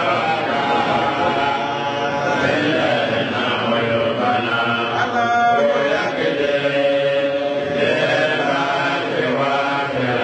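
Islamic devotional chanting by a group of voices, a steady, continuous sung recitation.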